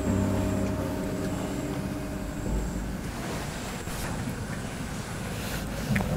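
Steady low background hum and rumble, with a few faint steady tones that fade out over the first few seconds.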